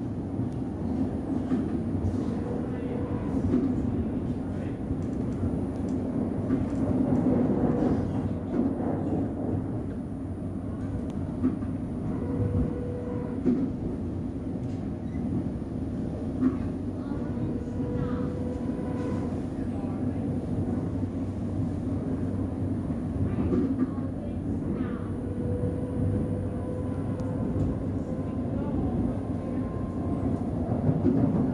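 Singapore MRT train running, heard from inside the carriage: a steady rumble with a faint whine that rises in and fades out several times.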